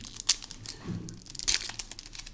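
Foil trading-card booster pack being torn open and crinkled by hand: a run of crackling crinkles with two louder sharp rips, about a third of a second in and again halfway through.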